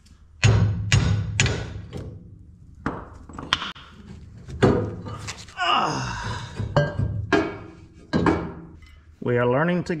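Hammer blows on a steel bar driven against the end of a hydraulic cylinder to knock it apart: about ten sharp metal strikes at uneven intervals, some ringing briefly.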